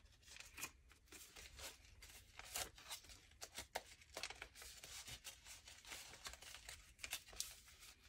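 Paper dollar bills being handled and counted out by hand: faint, irregular rustles and flicks of paper.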